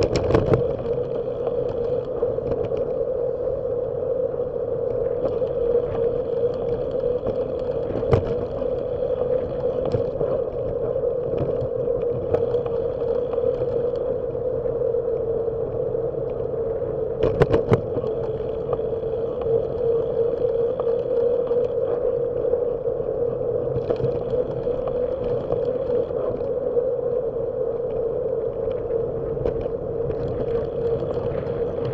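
Steady riding noise picked up by a bike-mounted camera on a moving bicycle: a continuous drone of wind and road noise with a steady hum, broken by a few sharp knocks, one at the start, one about eight seconds in and a double one near eighteen seconds.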